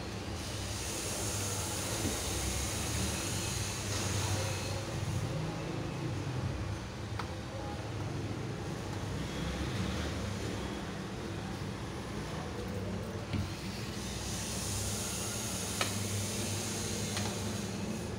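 A spoon stirring gram-flour batter in a steel bowl, with a few light clicks against the bowl. Under it runs a steady low hum with a hiss that swells twice.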